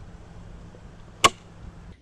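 A film clapperboard snapping shut once: a single sharp clack a little over a second in, over a faint low hum.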